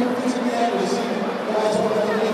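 Indistinct voices echoing in an ice arena.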